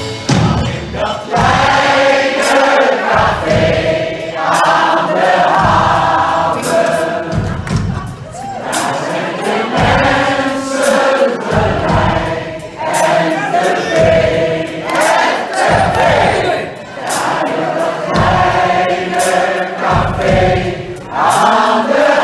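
Live Irish folk band playing a sing-along chorus, many voices singing together with the band and crowd.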